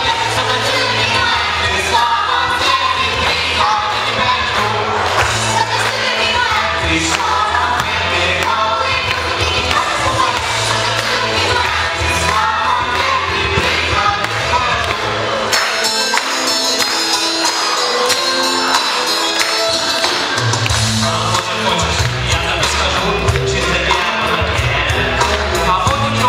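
A children's vocal group and a boy soloist singing into microphones over a backing track with a steady beat. The bass drops out for about five seconds past the middle, then comes back in.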